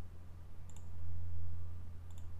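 A single faint computer mouse click about two-thirds of a second in, over a steady low electrical hum.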